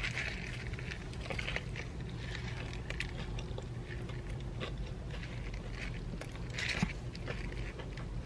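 Close-up chewing of a big mouthful of fried chicken sandwich: scattered crunches and wet mouth clicks over a low steady hum.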